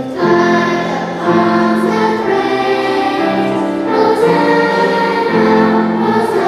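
Children's choir singing a hymn in unison, coming in just after the start over a piano accompaniment.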